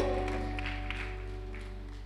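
Soft background music: a sustained keyboard chord held under the sermon, slowly fading away.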